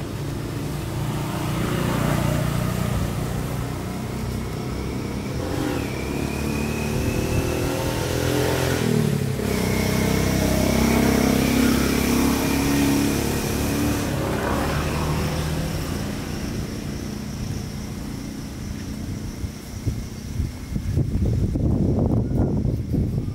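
Motor vehicle engines running and passing, swelling louder through the middle and fading, with scratchy rustling near the end.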